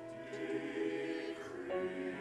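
Mixed choir of men and women singing a hymn anthem with grand piano accompaniment, holding sustained chords; a new chord comes in near the end.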